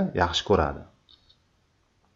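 A voice speaking briefly, then two faint, quick computer-mouse clicks a little after a second in.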